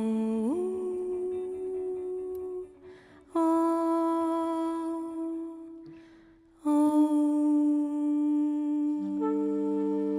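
Female jazz vocalist singing long, steady held notes without words, in three phrases with short breaks between them. A second, lower held note joins near the end.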